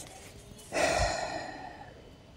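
A person's sigh: one breathy exhale starting a little under a second in and fading away over about a second.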